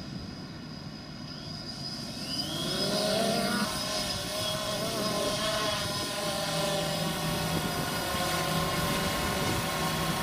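DJI Phantom 2 Vision quadcopter's four electric motors and propellers spinning up, the whine rising in pitch and getting louder about two to three seconds in as it lifts off, then settling into a steady multi-tone buzz as it hovers.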